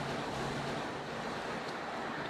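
Steady outdoor street ambience: an even rush of noise with a faint low hum underneath.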